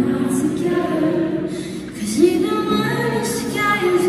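Woman singing live into a microphone over acoustic guitar, a slow stripped-down song with long held notes.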